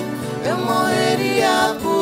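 Live acoustic pop music: acoustic guitars playing under a wordless sung vocal line that slides and bends in pitch, starting about half a second in.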